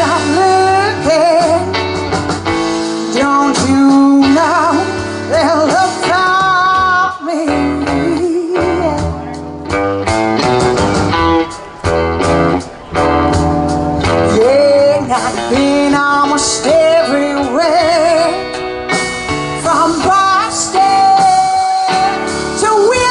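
Live blues band playing, with a woman singing the lead over electric guitars, drum kit and keyboard.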